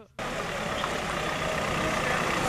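A van running and driving up close, a steady noisy rumble that starts suddenly a moment in and grows slightly louder as it approaches.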